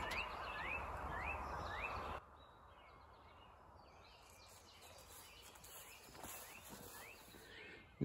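Quiet outdoor background noise with a bird repeating a short, rising chirp about twice a second. After about two seconds the sound drops suddenly to near silence, and faint chirps come back near the end.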